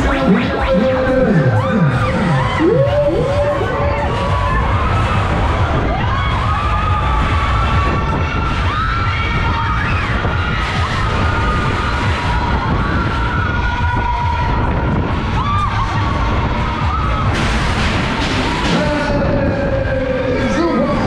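Riders screaming and shouting on a swinging, spinning Dance Jumper fairground ride, over heavy wind rushing across the microphone. Loud ride music plays underneath.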